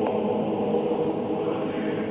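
A choir singing a slow chant in long held chords.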